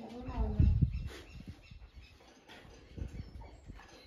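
A person's voice sounds briefly in the first second over a low rumble, followed by scattered faint clicks.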